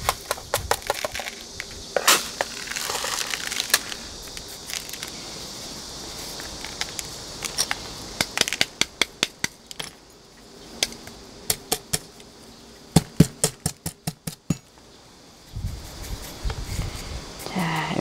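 Coarse gritty potting mix of small stones and grit clicking and rattling in a small ceramic pot as a succulent clump is pressed and settled into it by hand. Scattered sharp clicks, with quick runs of them in the middle and again later, over a faint steady hiss.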